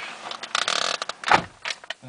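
Handling noise of a person settling into a car's driver seat: rustling and small clicks, a brief steady electronic tone about half a second in, and a dull thump a bit over a second in.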